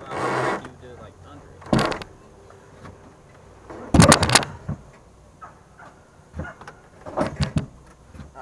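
Knocks and thuds of a dirt bike being shifted about on a wooden truck-bed floor, in separate clusters: a few near two seconds in, a quick loud group of four or five about four seconds in, and another group near the end.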